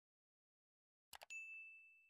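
Sound effect of a subscribe animation: a quick double mouse click about a second in, followed at once by a notification-bell ding on one high tone that rings and slowly fades.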